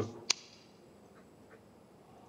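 The tail of a spoken word, then a single sharp click about a third of a second in, followed by quiet room tone with a couple of faint ticks.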